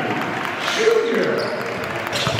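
Live basketball game sound: the ball bouncing on the hardwood court with scattered short knocks, and players and spectators calling out.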